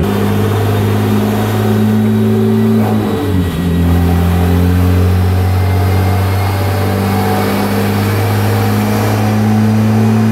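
Porsche 911 Turbo twin-turbo flat-six running at a steady speed on a chassis dyno through a catless stainless exhaust with anti-drone pipes, with a brief dip in engine speed about three seconds in before it settles back.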